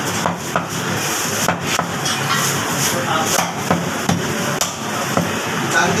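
Meat cleaver chopping on a wooden butcher's block: sharp knocks at irregular intervals over a steady background din.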